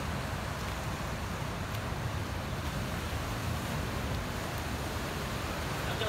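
Steady wind buffeting the microphone with a low rumble, over the continuous wash of sea surf breaking on a rocky shore.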